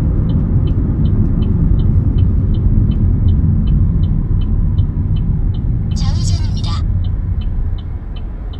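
A Chevrolet car's left turn signal ticking steadily, about three ticks a second, over the low rumble of the engine and tyres inside the moving car's cabin. A brief higher-pitched sound, like a short voice or chime, cuts in about six seconds in.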